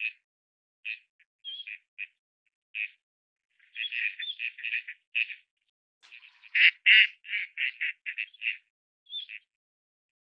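Gadwall ducks calling with short nasal calls. Single calls come every second or so at first, then two quick runs of calls, about four seconds in and from about six and a half seconds, the second run the loudest, and a last call near the end.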